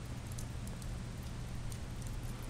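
Steady background noise with a low hum and sparse faint crackles, without speech.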